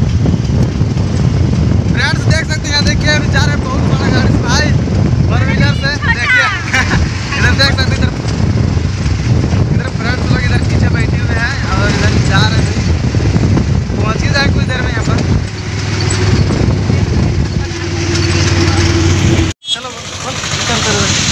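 A passenger vehicle's engine drones steadily as it drives, heard from inside the crowded open-sided cabin, with passengers' voices chattering over it. The sound cuts out for a moment near the end.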